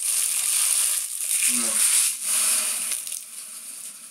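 Crinkly foil trading-card pack wrappers being crumpled and gathered up by hand, a dense crackling rustle that eases off near the end.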